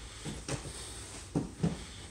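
Thuds of bodies on a grappling mat as a sickle sweep takes a standing partner down: a light knock about half a second in, then two heavier thuds close together near the end.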